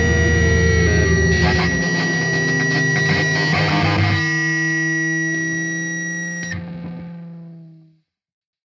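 Distorted electric-guitar band music ending. The full band drops out about two seconds in, leaving a last chord that rings on and fades away to silence near the end.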